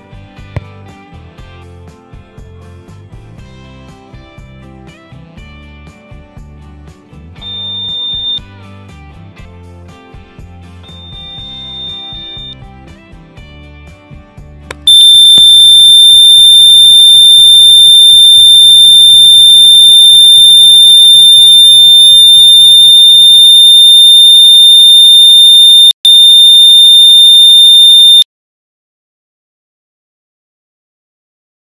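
Piezo buzzer of a homemade laser-beam security alarm sounding one loud, steady high-pitched tone, held on by the circuit's self-locking relay once the beam is broken. It drops out for a moment near the end, comes back, then stops abruptly. Earlier, two brief high beeps sound over background music.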